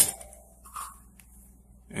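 Near-quiet room with a low steady hum, and a faint, brief handling sound from the opened plastic control-unit enclosure being turned in the hands about three-quarters of a second in.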